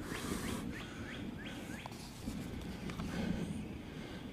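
A songbird calling in a rapid series of short rising notes, about three a second, stopping about two seconds in, over a steady low rumble.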